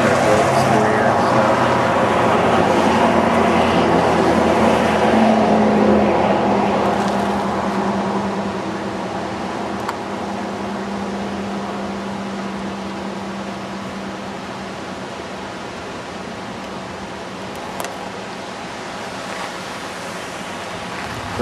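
A vehicle towing a boat trailer drives by on the highway. Its engine hum and tyre noise are loud for the first few seconds, then fade slowly as it moves away. A steady rush of noise carries on after it.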